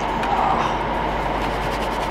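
Steady rushing noise of running cooling fans over a low electrical hum.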